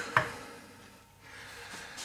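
A short knock a split second in, then soft rubbing and handling, as a wooden pipe blank is set into the metal jaws of a bench vise.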